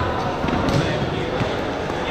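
Overlapping voices of a crowd talking in a large sports hall, with a couple of dull thumps.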